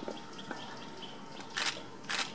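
A faint click about half a second in and a sharper, louder click near the end, over faint steady outdoor background noise.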